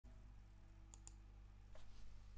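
Near silence: a faint low hum, with two faint clicks close together about a second in.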